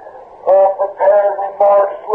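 A man's voice speaking in slow, drawn-out phrases, thin and narrow in tone like a radio.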